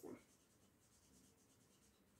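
Faint rubbing of a felt-tip marker's tip on paper while colouring in.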